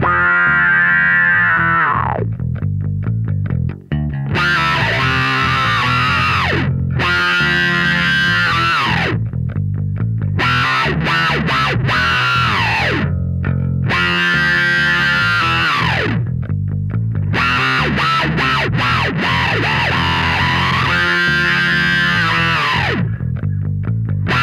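Electric bass played through a Line 6 POD Express Bass multi-effects pedal with distortion on: phrases of sustained, gritty notes with several slides down in pitch, separated by short breaks.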